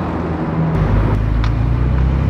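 Sports car engines running at low speed in city traffic: a Lamborghini Huracán's engine, then from under a second in a louder, deeper, steady engine note from a Porsche 911 Turbo rolling slowly past. A brief high squeak is heard about one and a half seconds in.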